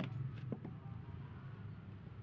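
A few light clicks from handling metal tools against a fan motor housing, near the start and about half a second in, over a steady low hum.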